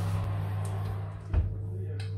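An oven door shutting with a single thump about one and a half seconds in, over a steady low hum.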